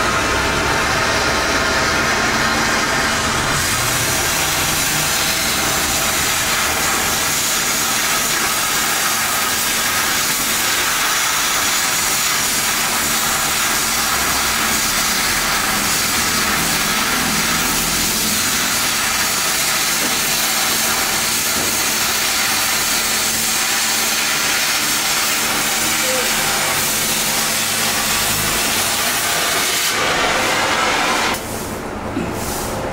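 Oxy-fuel cutting torch hissing steadily as it cuts through a steel plate. The hiss turns brighter and harsher about three and a half seconds in and holds steady from then on.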